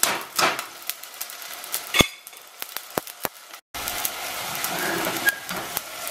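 Wet, freshly rinsed quinoa sizzling and crackling in hot vegetable oil in a stainless steel pot, the water on the grains spitting in the oil. A sharp metal knock about two seconds in and two lighter clicks soon after, then the sound cuts out for a moment before the sizzling goes on more steadily.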